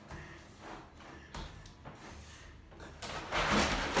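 A few faint knocks as a plastic laundry basket with a rider in it shifts at the edge of a stair. About three seconds in comes a loud run of bumping and scraping as the basket slides down the flight of stairs.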